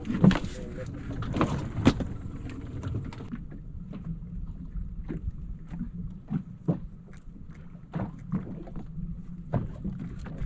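A small fishing boat's engine running with a low steady rumble, under scattered short knocks. The first three seconds are louder and busier, with more knocking and hiss.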